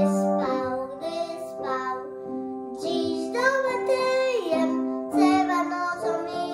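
A young boy singing a song in Polish solo, accompanied on an upright piano, with some notes held for over a second.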